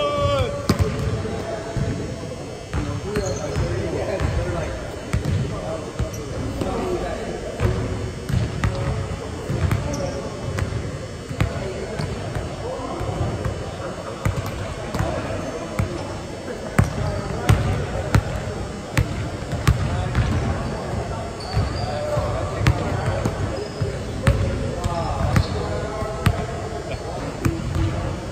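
Several basketballs bouncing on a hardwood gym floor, with dribbles and thuds overlapping at an uneven rhythm throughout.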